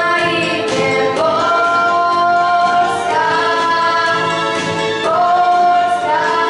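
Two girls singing a song together into microphones, holding long notes that slide between pitches, over a steady instrumental accompaniment.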